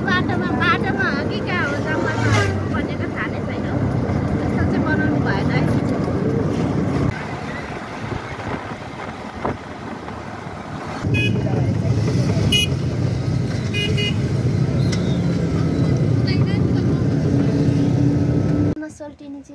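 Riding in an open-sided rickshaw in traffic: steady road and wind noise with a low engine hum, voices in the first few seconds, and several short horn toots in the second half.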